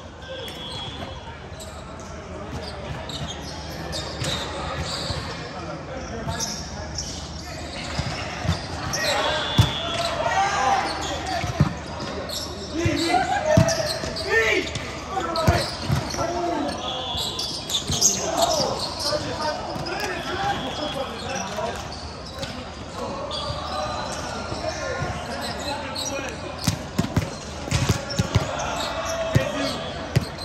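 Volleyball game play in a large hall: the ball being struck and hitting the floor in sharp smacks scattered throughout, amid players' shouts and indistinct voices.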